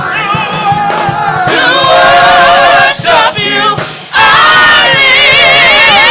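Gospel praise team singing loudly with heavy vibrato over a steady drum beat. The voices drop away briefly around the middle, then come back in full.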